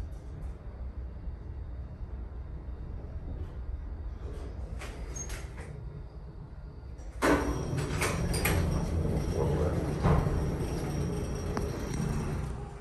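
Vintage 1945 Otis geared traction elevator: a steady low hum during the ride, with a few faint clicks. About seven seconds in, the car doors slide open with a sudden loud sliding noise that lasts several seconds.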